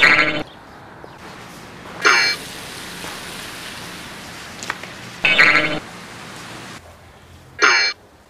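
A comedic 'blink' sound effect, a short wobbling tone, played four times over steady outdoor background noise.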